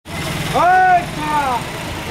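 A motor vehicle's engine running with a steady low rumble, and a loud drawn-out two-part call from a person's voice about half a second in, the second part falling in pitch.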